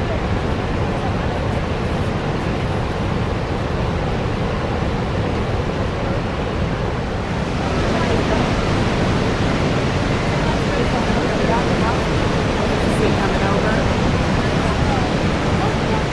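Steady rush of water from Niagara's Horseshoe Falls, a dense even roar of falling and churning water that gets louder and brighter about halfway through, with faint voices of onlookers underneath.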